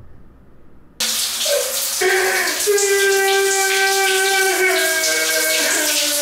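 A shower running, its water spray starting suddenly about a second in. From about two seconds a man's voice sings long held notes over the spray, changing pitch twice near the end.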